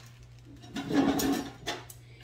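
Someone fetching a plastic storage box: about a second of scraping and rustling as it is pulled out and picked up, then two light knocks near the end.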